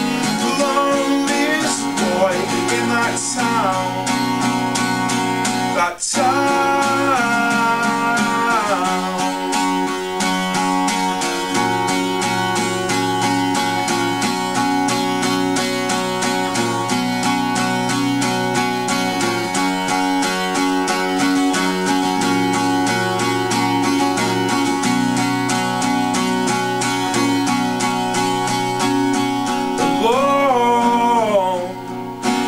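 Steel-string acoustic guitar strummed steadily through an instrumental stretch of a song, with long sung notes gliding over it for the first several seconds. The sound drops out for an instant about six seconds in.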